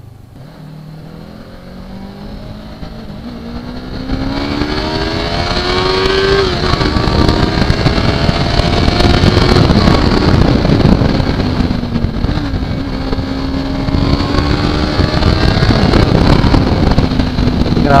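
2018 Yamaha YZF-R3's 321 cc parallel-twin engine accelerating, its pitch climbing for about six seconds, then changing gear and pulling on at a steadier, higher pitch. Wind noise grows louder as speed builds.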